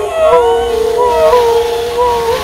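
A woman's voice making long, wavering, animal-like howls.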